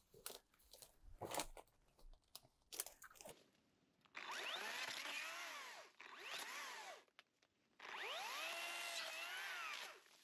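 18-volt cordless chainsaw cutting thin bamboo in three bursts, a long one about four seconds in, a short one, then another long one near the end. The motor's whine rises as it spins up and sags as the chain bites into the cane. Before the cutting there are a few crackles and snaps of brush.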